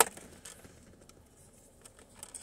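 A single sharp click, then a few faint light ticks of small puzzle pieces being handled and fitted together.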